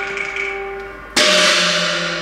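Cantonese opera accompaniment: a held instrumental note fades away, then about a second in the percussion section strikes a loud cymbal-and-gong crash that rings on and slowly dies away.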